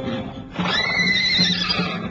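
A horse whinnying: one call of about a second and a half, starting about half a second in, rising and then falling in pitch, over background film music.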